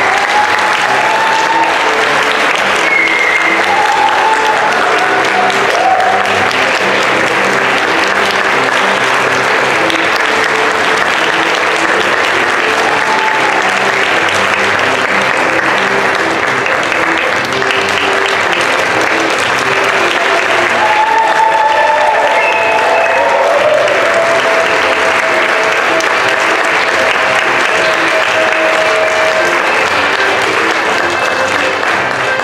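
Audience applauding steadily, with instrumental music playing underneath.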